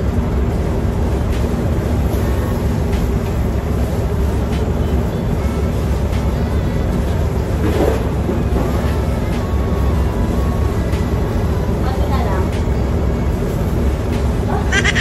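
Steady low mechanical rumble with a constant hum, as of building ventilation or refrigeration machinery, with a few faint knocks from handling trash and sweeping.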